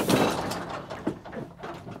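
Te Pari Racewell sheep handler clanking: a sharp metal bang at the start, then about half a second of rattling and scuffling as a lamb pushes into the crate, with a few lighter knocks after.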